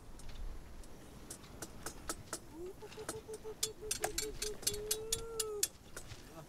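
Wooden practice swords clacking together in quick, irregular strikes. Partway through, a voice calls out over them, first in a quick pulsing run and then in one held note.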